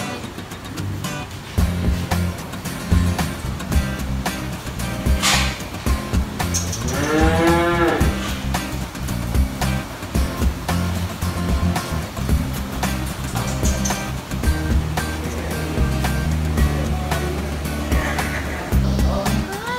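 Background music with a steady beat, and about seven seconds in a single drawn-out farm animal call, about a second long, rising then falling in pitch.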